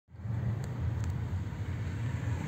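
Steady low rumble of a car's engine and road noise heard from inside the cabin while driving slowly in traffic.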